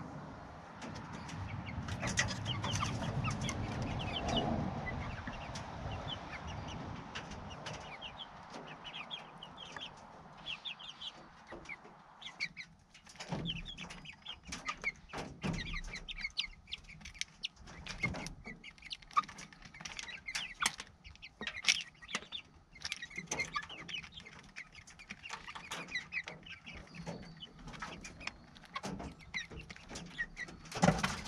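Young pullets clucking and peeping close by, with quick, irregular taps of beaks pecking pellet feed from a galvanized metal feeder pan. A low rumble is the loudest sound in the first few seconds.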